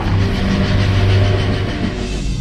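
Film trailer score with held low notes under a steady rushing noise.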